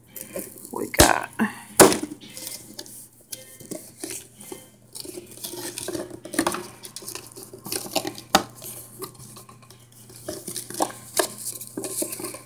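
A cardboard sample box being opened and its contents handled by hand: rustling paper and cardboard, broken by sharp taps and knocks. The loudest knocks come about a second in, just under two seconds in, and about eight seconds in.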